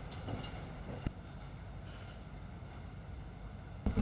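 Quiet room tone through an open meeting-room microphone: a low steady hum with faint background noise, and one small click about a second in.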